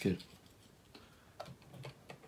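Light clicks of cardboard crocodile heads being pushed into the slots of a paper-craft Wani Wani Panic game, a couple of them in the second half.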